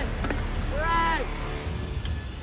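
Wind rumbling on the microphone, with one short, high, pitched voice sound about a second in that rises and falls.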